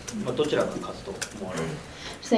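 Speech only: a voice talking quietly.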